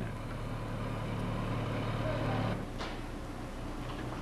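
A steady low mechanical hum with a hiss over it, which weakens about two and a half seconds in.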